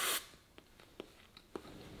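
A person sucking air in sharply through the open mouth, a hissing inhale that stops just after the start, then a few faint mouth clicks from chewing on nothing.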